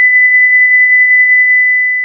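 Heart monitor flatline tone: one long, steady, high-pitched tone, the sign that the heartbeat has stopped. It fades away near the end.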